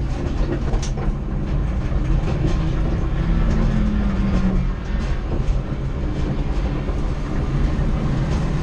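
Steady low rumble with constant rattling and clicking from the stripped interior of a roll-caged race car moving slowly over rough ground. A low hum swells briefly around the middle.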